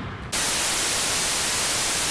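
Television static: a loud, steady hiss of white noise that cuts in abruptly about a third of a second in, used as an editing transition. Before it, a brief rush of noise fades away.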